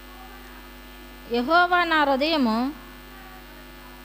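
Steady electrical mains hum through the microphone's sound system. A woman's voice comes in once near the middle with a single drawn-out word or phrase lasting about a second and a half.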